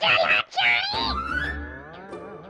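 A green ring-necked parakeet screeching: two sharp, high calls in the first second, then a drawn-out falling note, over soft background music.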